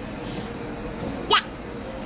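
A child's single short hiccup-like vocal sound, a sharp squeak that sweeps steeply up in pitch, about a second and a half in, over low room noise.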